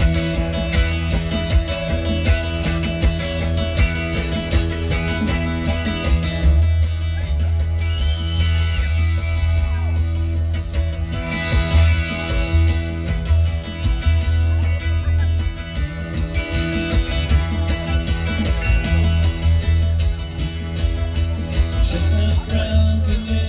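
Live rock band playing an instrumental passage with no vocals: acoustic and electric guitars over bass guitar, drums and keyboards, with a steady beat.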